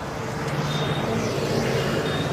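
A vehicle engine running steadily, a continuous low hum with a few faint short high tones over it.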